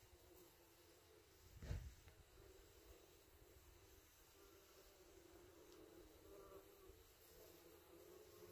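Faint buzzing of bumblebees feeding on a flowering shrub, steady but wavering. A brief low thump comes a little under two seconds in.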